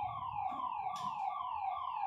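An electronic siren sounding a fast string of falling tones, about three a second, steady and repeating.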